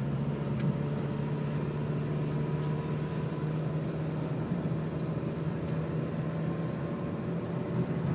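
Car engine and road noise heard from inside the cabin while driving at a steady speed: a steady low hum.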